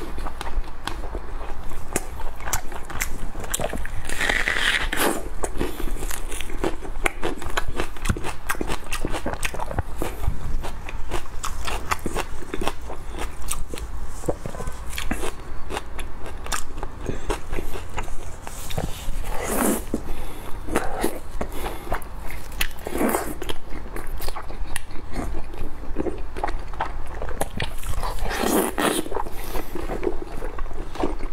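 Close-miked chewing of soft, glazed red-braised pork belly: a continuous run of wet mouth clicks and smacks, with a few louder, longer mouth sounds about 4, 19, 23 and 28 seconds in.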